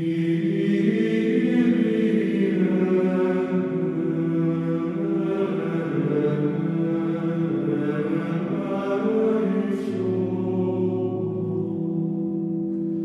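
Background music of voices chanting over a sustained low drone, with a deeper held note entering near the end.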